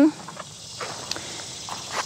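A steady, faint chorus of insects from the surrounding summer grass and field, a continuous high-pitched trilling with no clear start or stop.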